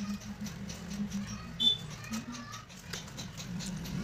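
Stiff paper card stock being handled, folded and opened as a cut-paper pop-up card: a run of small rustles, ticks and crinkles. About one and a half seconds in there is a brief, sharp high squeak, the loudest sound, over a low, steady hum.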